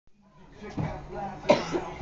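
A man coughing on a lungful of marijuana smoke, with the sharpest cough about one and a half seconds in.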